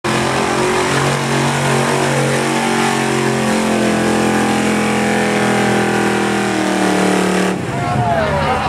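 Pickup truck engine held at high revs, holding a steady pitch with a small step partway through, then stopping abruptly near the end.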